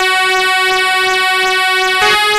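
A single chord held steadily on a keyboard instrument, one sustained reedy tone with no beat and no change in pitch.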